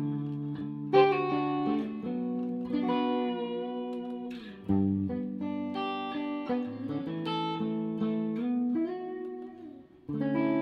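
Höfner Galaxie reissue electric guitar played clean through a Bogner-designed Line 6 Spider Valve amp, on its neck and treble pickups together: chords struck every second or so and left to ring, with a pitch bend near the end before the sound fades.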